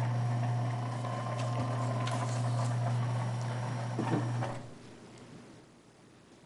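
Electric motor of a motorized projection screen running with a steady low hum as the screen lowers. It stops about four and a half seconds in, with a couple of light knocks near the stop.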